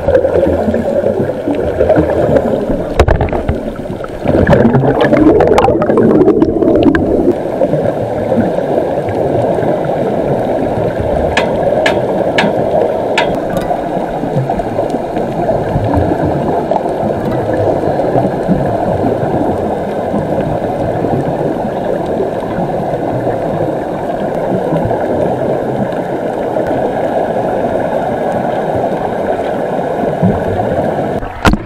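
Underwater sound picked up through an action camera's waterproof case: a steady muffled rushing with bubbling. It is loudest between about four and seven seconds in, and a few sharp clicks come a little before halfway.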